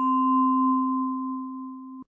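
A single ringing tone like a struck tuning fork, steady in pitch, fading slowly over about two seconds and then cut off suddenly near the end.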